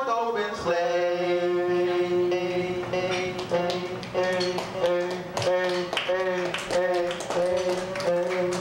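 Live amplified music: two notes held together as a long chord, then, from about three seconds in, the same chord pulsed in a short, even rhythm.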